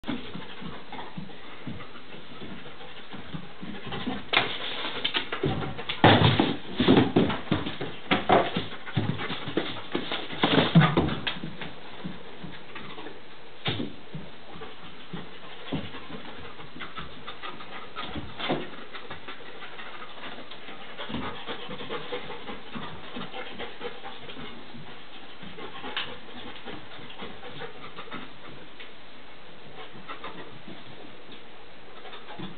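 A young Belgian Malinois working a room on a scent search, panting as it moves about. A run of sharp knocks and clatter comes between about four and twelve seconds in, then only a few single knocks.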